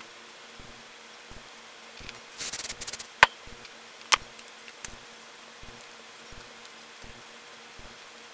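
Faint steady electrical buzz, with a short rustle of hair being handled about two and a half seconds in and a few sharp clicks just after.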